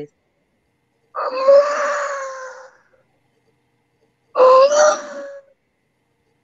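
Two long breathy notes blown on a small hand-held whistle, each holding one steady pitch after a slight rise at the start. The first lasts about a second and a half; the second, about four seconds in, is shorter and louder.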